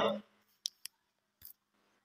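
The last sound of a man's chanted street-hawker's cry selling jaggery (gur) fades out at the start, followed by a pause of near silence broken by three faint clicks.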